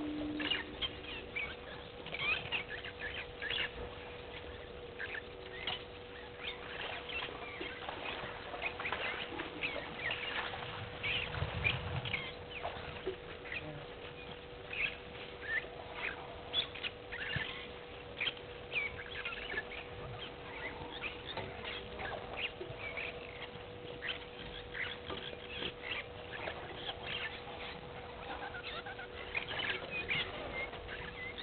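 Outdoor ambience full of many short, scattered bird chirps and clicks, with a steady faint hum underneath and a brief low rumble about midway.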